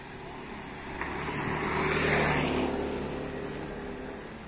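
A motor vehicle passing by on the road: engine and tyre noise rise to a peak about two seconds in and then fade.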